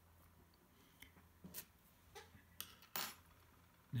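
A few faint, scattered clicks and taps from small metal extruder parts being handled, over a low steady hum.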